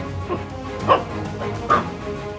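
Small Maltese dog barking twice, two short sharp barks a little under a second apart, over background music.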